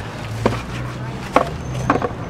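Chess pieces being set down on a board: three sharp knocks, the second and third close together, over a steady low background hum.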